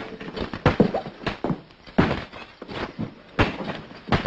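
Swords clashing in a staged fight: a rapid, irregular run of sharp strikes, more than a dozen in four seconds, some ringing briefly.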